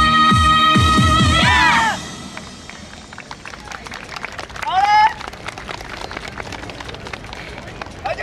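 Recorded yosakoi dance music ends about two seconds in on a held note over drum beats, closing with a shouted call. Then an audience claps, with one loud rising shout near the middle.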